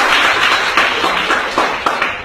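Audience applauding: many hands clapping at once, which dies away near the end.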